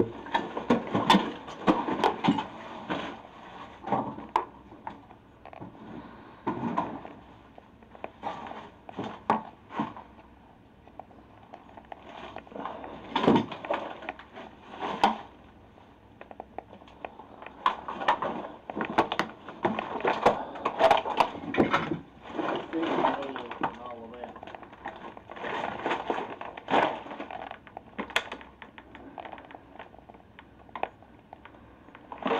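Indistinct, muffled talk, with scattered clicks, knocks and crunches from footsteps and hands moving through debris in a cluttered room.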